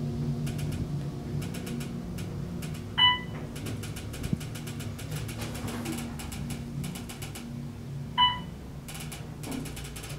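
Otis hydraulic elevator car running up with a steady low hum. Two short chimes sound about five seconds apart, a few seconds in and near the end: the car's signal as it passes floors. A faint rapid ticking runs underneath.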